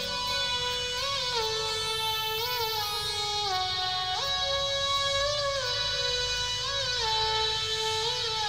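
Instrumental music playing through a small brushed-metal portable Bluetooth speaker, the 7dayshop Magic Tube DS-032: a melody of long held notes that slide from one pitch to the next.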